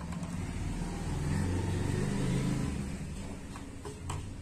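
A low engine rumble, like a passing motor vehicle, that swells to its loudest around the middle and then eases off.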